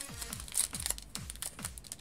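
Foil Pokémon booster pack wrapper crinkling as it is torn open, over background music with a regular thumping bass beat.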